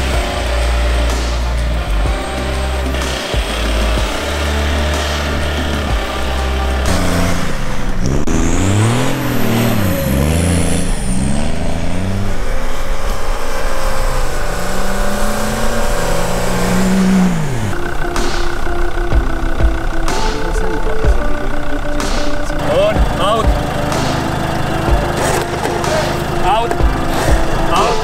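Background music with a steady bass, and in the middle a 4x4's engine revving up and down several times under load as it is pulled out of deep snow on a tow strap.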